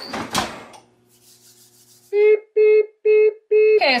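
A brief rubbing, scraping noise, then an electronic oven timer beeping four times, about two short beeps a second. The timer signals that the muffins' set baking time is up and they are due to be checked.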